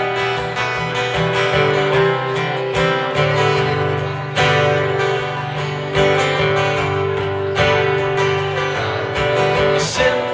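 Acoustic guitar strumming chords while a fiddle plays long held notes over it: an instrumental break with no singing.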